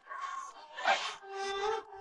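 Soft background music from a TV drama score: a breathy swell that peaks about a second in, then a single held note to the end.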